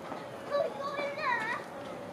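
Voices of people in a crowd, with a child's high-pitched call about a second in that rises and falls.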